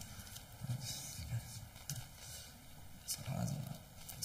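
Handling noise at a wooden lectern: a few sharp knocks and paper rustles as a card and papers are picked up and sorted, with some quiet mumbled speech between them.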